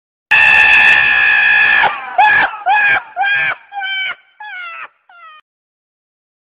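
Donkey braying: one long, loud held call, then six shorter hee-haws, each falling in pitch and each fainter than the last, dying away about half a second before the end.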